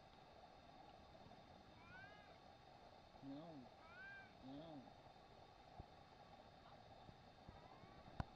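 A domestic cat meowing faintly: a few short meows, each rising and falling in pitch, in the middle few seconds.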